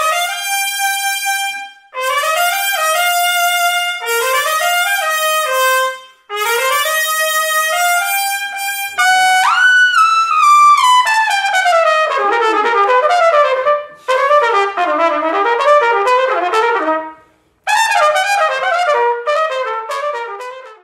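Trumpet played through a Lotus 2XL2 mouthpiece, with short phrases from more than one player separated by brief breaks. About halfway through there is a fast rip up to a high note, then a long run cascading down, followed by quick busy runs of notes.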